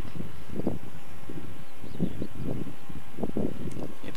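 Wind buffeting the microphone, a gusty low rumble that comes and goes in uneven surges.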